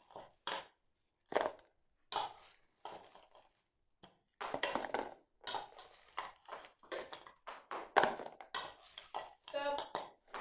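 Small loose items tipped from a plastic jug and a spoon clatter and rattle into a plastic bowl in short irregular bursts of clicks and rustles.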